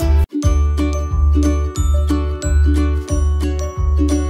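Background music: light chiming bell-like notes over a pulsing bass line with a steady beat. It cuts out for a moment just after the start, then resumes.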